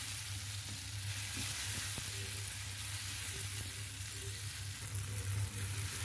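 Shallots, garlic and sliced red chilies sizzling steadily in hot oil in a nonstick frying pan as they are stir-fried with a wooden spatula, over a constant low hum.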